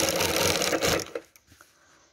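Industrial sewing machine stitching at speed, a fast even run of needle strokes, stopping about a second in.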